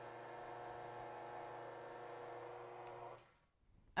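Stand mixer's motor running on low with a flat beater, mixing flour into a whipped egg-and-sugar sponge cake batter: a quiet steady hum. It is switched off about three seconds in and stops abruptly.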